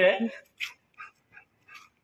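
A dog making four short, quiet sounds about half a second apart, just after a man's loud voice stops.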